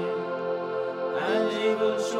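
Slow devotional chant: a voice sings over sustained accompaniment, sliding in pitch about a second in.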